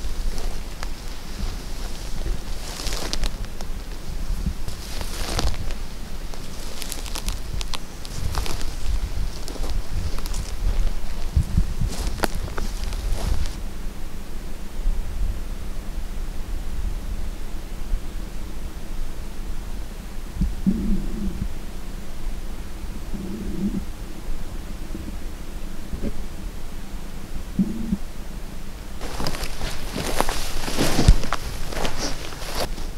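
Rustling of dry grass and clothing as a hunter moves on a grassy hillside, in several bursts through the first half and again near the end, over a steady low rumble on the microphone. The middle is calmer, with only the rumble and a few short low sounds.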